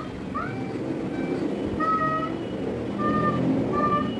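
An animal's short, high, repeated calls, one every half second to a second, over a steady low rumbling background noise.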